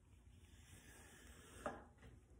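Faint rustle of paper being handled by a gloved hand, with one short crinkle near the end.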